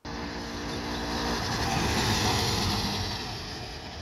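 Vintage Vespa VBB scooter with a two-stroke single-cylinder engine, towing a small trailer, driving past: the sound grows louder to a peak about halfway through, then fades as the scooter moves away.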